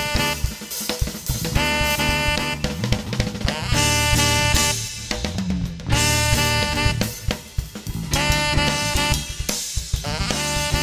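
Live smooth-jazz band: a saxophone plays the melody in long, held phrases that come about every two seconds, over a drum kit with hi-hat, snare and bass drum, an electric bass and keyboards.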